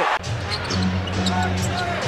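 Loud arena crowd noise from a basketball broadcast cuts off abruptly at an edit just after the start. Quieter game audio follows, with a steady low hum held for about a second and faint voices.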